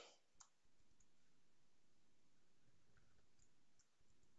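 Near silence, broken by a few faint clicks of a computer keyboard and mouse.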